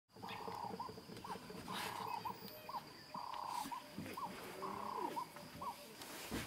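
Night-time wild animal calls: a short trilled note followed by two quick short notes, repeated about every one and a half seconds, four times. Under them runs a steady high insect tone.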